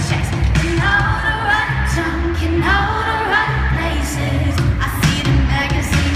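Live pop music played over an arena sound system: a woman singing over a heavy, pulsing bass line and beat.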